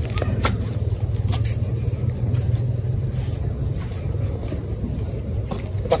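Steady low rumble of outdoor background noise, with a few faint taps in the first second or so.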